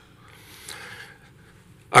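A man's faint breath at a lectern microphone, a soft breathy rush under a second long, followed by his voice starting again right at the end.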